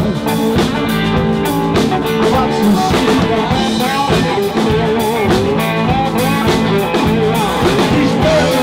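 Live blues-rock band playing: a Telecaster-style electric guitar over a drum kit and bass guitar, with a steady beat.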